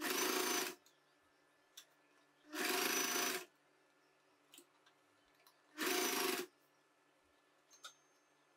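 Electric sewing machine running in three short stitching bursts, each under a second, with pauses between them. Faint clicks sound in the gaps.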